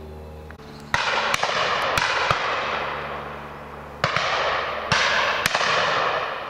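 Shotguns firing at driven partridges: a string of sharp reports, with four shots in quick succession from about a second in and three more from about four seconds in. Each shot trails off in a long echo.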